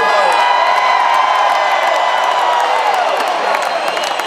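Stadium crowd cheering and whooping, with one long held whoop over the noise that sinks and fades about three seconds in.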